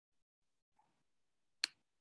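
Near silence with a single sharp click about one and a half seconds in.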